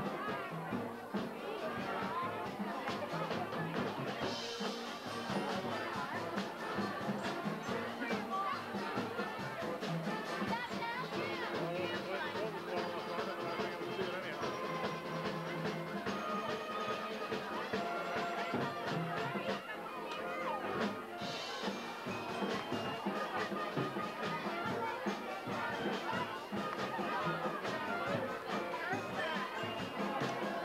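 Brass band music playing over the steady chatter of a large crowd, with some notes held long.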